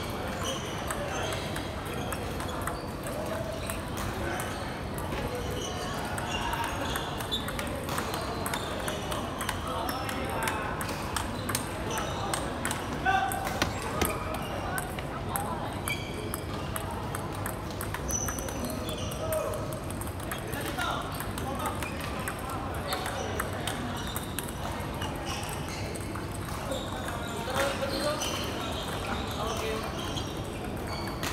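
Table tennis balls clicking repeatedly off paddles and tables in rallies, with sharper knocks about a third of the way in and near the end, over background chatter in a sports hall.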